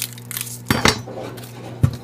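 A chef's knife cutting through a red onion and knocking on a bamboo cutting board. There are a couple of sharp knocks a little under a second in, then a single louder knock near the end as the knife is laid down on the board.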